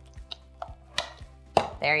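Scattered light clicks and taps of kitchen utensils: a spatula stirring a thick mixture in a mixing bowl, with a salt or pepper grinder being handled.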